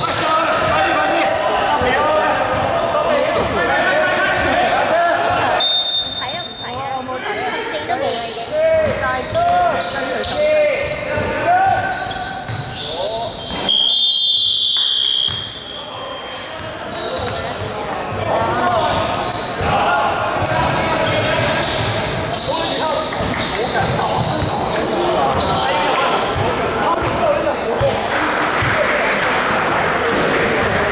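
Basketball being played in an echoing sports hall: a ball bouncing on the hardwood court, with players' voices. A referee's whistle blows once, steady and high, about fourteen seconds in.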